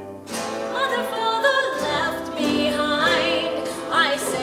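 A woman singing. A new phrase begins about a third of a second in, and her held notes waver in vibrato.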